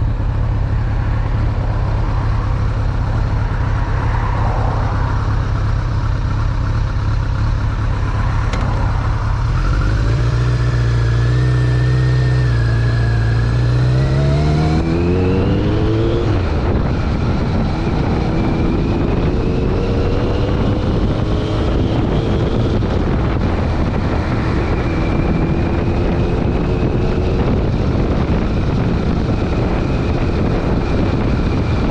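2001 Kawasaki ZRX1200R's carbureted inline-four engine idling steadily, then pulling away about ten seconds in. Its pitch climbs, drops back at an upshift around sixteen seconds, and climbs again in further steps as the bike gathers speed.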